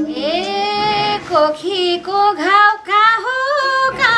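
A woman singing a Nepali folk (dohori) line unaccompanied in a high voice, with long notes that slide and bend in pitch.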